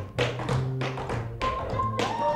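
Tap dancer's shoes striking the floor in a quick run of taps, about three a second, over live jazz with an upright bass line.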